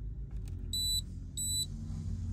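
Two short high-pitched beeps, about half a second apart, from the BRC LPG changeover switch's buzzer as its button is held down to arm the emergency start on gas. A low steady hum sits under them.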